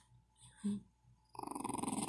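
Dogs play-wrestling: nearly quiet at first with one short low grunt about half a second in, then a rough, pulsing dog growl that starts about a second and a half in.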